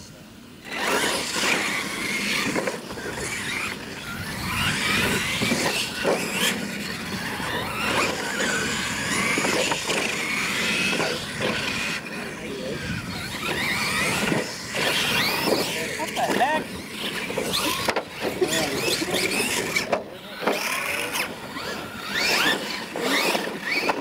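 Losi LMT radio-controlled monster trucks' brushless electric motors whining, the pitch rising and falling over and over with the throttle as they race, with scattered knocks from landings and bumps.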